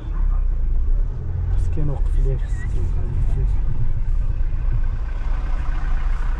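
Low, steady rumble of a car's engine and tyres heard from inside the cabin as it creeps slowly along, with faint voices of people outside in the middle.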